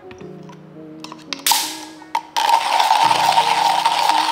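Coffee beans crunching in a Comandante C40 hand grinder as it is cranked: a loud, steady, gritty grinding that starts abruptly about halfway through, after a short rattle. Background music plays throughout.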